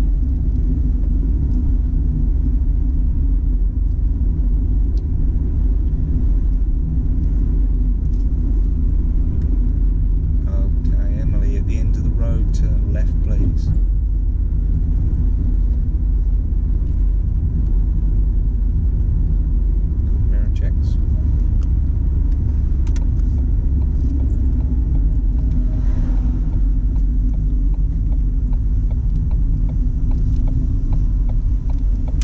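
Steady low rumble of a car being driven, engine and tyre noise heard from inside the cabin.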